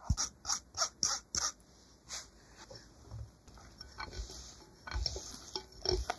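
A stainless mesh sieve of corn starch being tapped over a glass bowl: short taps about three a second for the first second and a half, and one more about two seconds in. Then a wire whisk stirs the thick flour-and-yolk batter in the glass bowl, with soft irregular scrapes and clicks.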